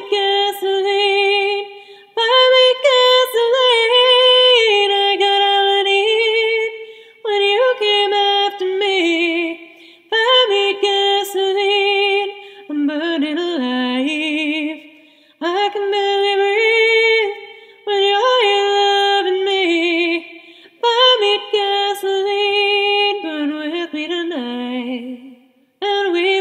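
Female voice singing a cappella, with no instruments: sustained notes with vibrato in phrases of a few seconds, each followed by a short breath pause.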